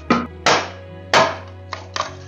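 A machete chopping into green bamboo: three sharp, loud strikes, each ringing briefly, as a bamboo section is split into strips. Background music plays underneath.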